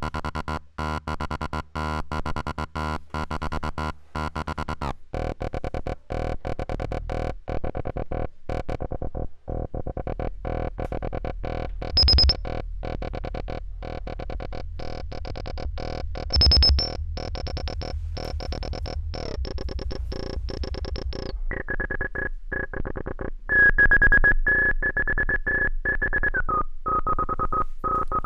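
Eurorack modular synth tone chopped into rapid, uneven pulses by a square-wave LFO, played through a resonant filter whose cutoff and resonance are being turned. Brief high resonant whistles come through twice, then a steady resonant tone takes over and steps down in pitch near the end.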